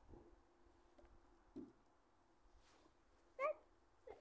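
Near silence, broken by a soft thud about one and a half seconds in and one short, high, voice-like call about three and a half seconds in.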